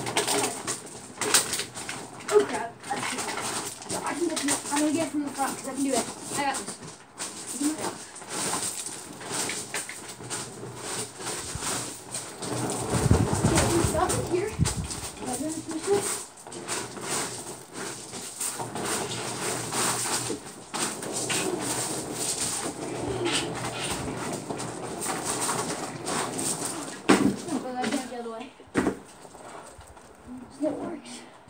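Voices talking some distance from the microphone, with scattered knocks and clatter of things being moved about, and a longer low rumbling noise about thirteen seconds in.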